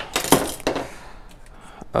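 Small spring clamps being unclipped from popsicle-stick fin alignment sticks and handled: a few light clicks and clacks, most of them in the first second.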